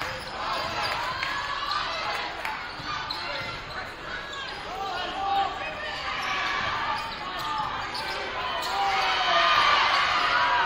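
Basketball being dribbled on a hardwood gym floor during live play, with spectators' voices and calls echoing through the gym; the voices grow louder near the end.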